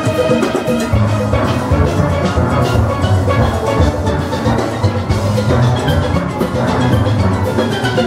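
A full steel band playing at speed, with bass steel pans, full oil-drum barrels struck with rubber-tipped mallets, loudest up close, giving a deep booming bass line. Drums keep a quick beat under it.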